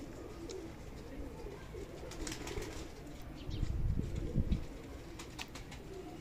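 Domestic pigeons cooing steadily around a loft. A brief louder low rumble comes a little past halfway.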